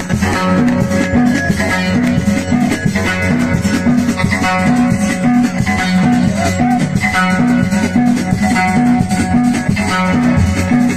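Outar (lotar), the skin-topped Moroccan lute of Abda folk music, plucked in a fast repeating riff over steady percussion.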